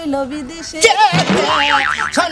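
A cartoon "boing" comedy sound effect: a sudden springy tone about a second in whose pitch dips steeply and bounces back up in quick wobbles.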